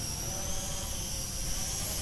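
SG900-S GPS quadcopter drone flying overhead: a steady whine from its motors and propellers.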